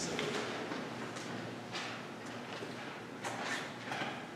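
Quiet church room tone with a few faint, brief rustles scattered through the pause.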